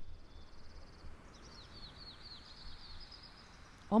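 Faint birdsong: a quick high trill, then from about a second in a run of short falling chirps, several a second, over a low steady hum.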